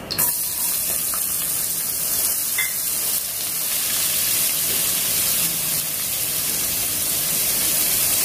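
Sliced onions sizzling in hot oil with whole spices, the sizzle starting suddenly as the onions are tipped in and then running on as a steady hiss.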